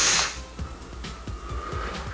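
The end of a hiss of air drawn through a Vandy Vape Kylin M RTA with a Nexmesh mesh coil firing, cut off about a quarter second in, then a softer, steady breathy exhale of vapour.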